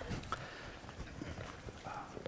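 Quiet room with a few faint, scattered clicks and knocks as glass beer bottles are drunk from and lowered.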